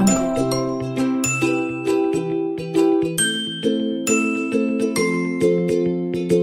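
Background music: a light tune of bell-like chiming notes over sustained chords and a steady, even pulse.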